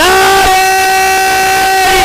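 A single voice holding one long, steady note, amplified through a microphone.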